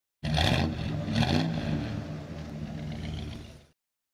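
Car engine revving twice in quick succession near the start, then running on and fading out just before the end.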